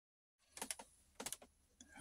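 Faint, sharp clicks in two small clusters of about three each, half a second apart, with a single click near the end.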